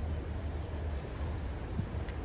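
Steady low outdoor rumble with a faint even hiss over it; no goose calls.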